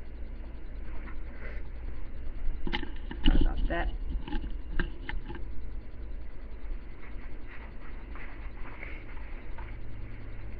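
Military web gear being put on and fastened: a cluster of clicks and knocks from the belt buckle and straps about three to five seconds in, with lighter handling noise later, over a steady low hum.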